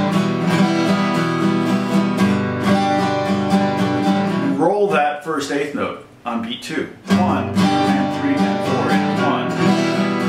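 Vintage Martin steel-string acoustic guitar strummed in a steady rhythm of one quarter-note downstroke followed by six eighth-note down-up strokes per bar. The strumming stops for about two seconds in the middle and then picks up again.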